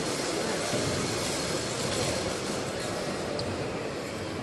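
Steady rushing background noise of a large sports hall, even in level, with no distinct events.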